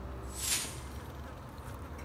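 Kitchen knife slicing through a pork loin's fat cap: one short hiss about half a second in, over a steady low rumble.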